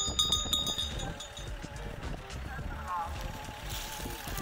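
Wind rumbling on the microphone. There is a brief high, steady ringing tone at the start, and a short wavering call about three seconds in that fits the grey mare whinnying, as she called repeatedly during the test.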